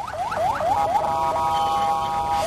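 Electronic vehicle siren, as from a convoy escort, sounding a fast rising yelp about four times a second, then holding a steady tone from about a second in.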